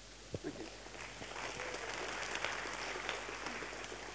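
Audience applauding in a hall. The applause builds over about a second, holds, then thins out near the end.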